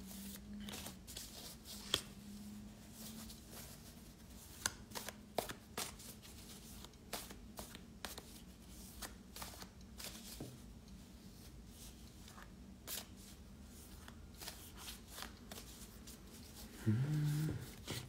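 A deck of metaphorical association cards being shuffled by hand: faint, irregular flicks and rustles of card stock.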